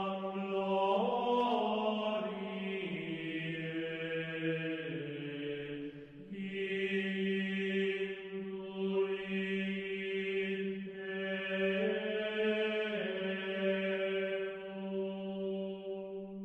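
Slow vocal chant in a low voice, a few long held notes with the melody moving only by small steps, and a short break about six seconds in.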